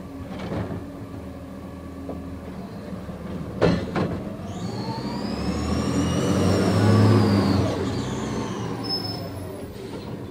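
Front-loading garbage truck pulling away from the curb: a sharp knock a little over a third of the way in, then the engine rumble and a high whine rise and fall together, loudest about two-thirds of the way through.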